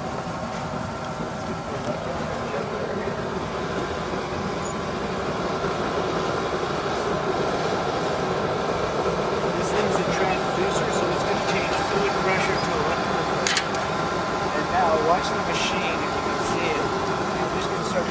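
Steady mechanical hum holding several steady tones, with faint voices heard briefly now and then.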